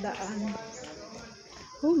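A woman's voice exclaiming "oh my God", with a few faint clicks.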